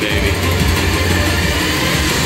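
Slot machine bonus sound effects and music over steady casino din, as the last open position on the Money Link coin grid spins.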